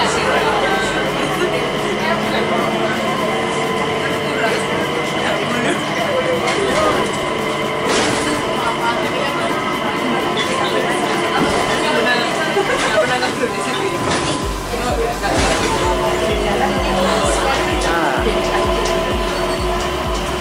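Cabin noise of a Mitsubishi Crystal Mover rubber-tyred automated people mover in motion: a steady running rumble with several held whining tones, and passengers' voices in the background. About two thirds of the way through, a low pulsing bass beat of background music comes in.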